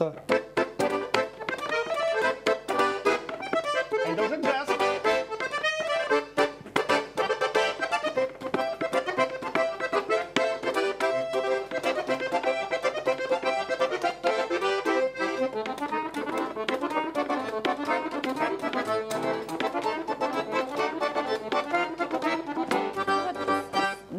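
Russian garmon (button accordion) played solo: quick runs of notes over full, rhythmic chords.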